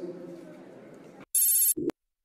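Short electronic telephone-style ringing tone, about half a second long, followed by a brief low blip and a click, then the sound cuts to dead silence. It is a broadcast transition cue marking the cut back to the studio phone link.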